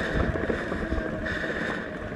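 Mountain bike rolling along a dirt trail: a steady rumble from the tyres over the ground, small knocks and rattles from the bike, and wind noise on the microphone.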